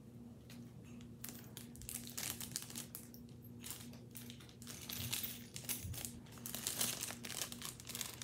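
Plastic bag crinkling and rustling as it is handled, in irregular crackles that grow louder in the second half.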